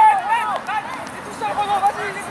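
Several people shouting and calling out over one another, high, raised voices overlapping, with no clear words.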